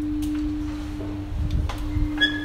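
A single steady low-pitched tone held without change, a sustained drone in the drama's background score, over a faint low rumble.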